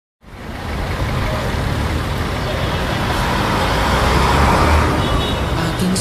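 Street ambience: steady traffic noise with indistinct voices, fading in at the start. Faint musical tones enter near the end.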